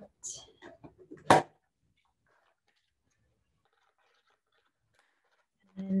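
A blade cutting into thin rigid plastic packaging: a few small crackling clicks, then one sharp plastic snap about a second in.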